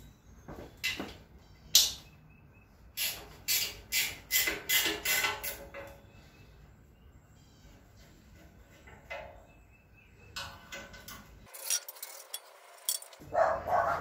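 Metal clinks and clicks of a hand wrench working the bolts that hold the steel pan seat of a Ford 8N tractor: a few single knocks, a quick run of about eight clicks a few seconds in, a pause, then more clinks near the end.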